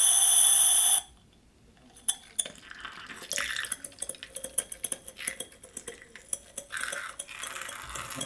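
Cream-whipper foam siphon: a loud steady hiss of gas through the first second, cut off sharply, then after a short pause a long run of irregular clicks, spurts and spatters.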